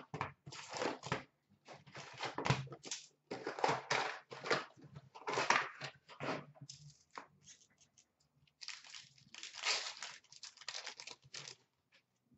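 A cardboard hobby box of Upper Deck SP Authentic hockey cards being torn open and its wrapped card packs pulled out and handled: irregular tearing and crinkling, with a short pause about two-thirds of the way through.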